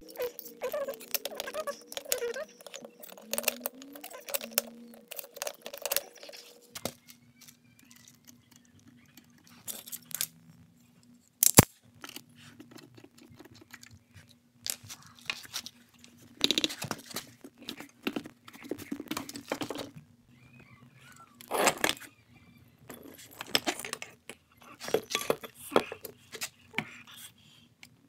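Metal hand tools clicking and clinking irregularly as a 17 mm socket wrench turns the stuck top nut of an air-suspension strut while locking pliers hold the shaft, then loose metal parts rattle as they are handled. One sharp, loud click stands out about eleven seconds in, over a faint steady hum.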